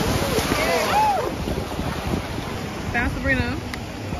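Wind buffeting the microphone over small waves washing onto the shore, a steady rushing noise with gusty low rumbles.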